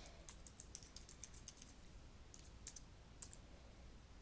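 Faint computer keyboard typing: quiet, irregular keystrokes in short runs with brief pauses, as login details are typed in.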